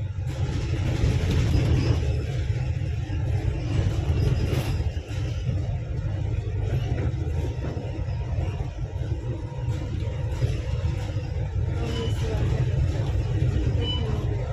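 Steady low rumble of a bus's engine and tyres heard from inside the moving cabin.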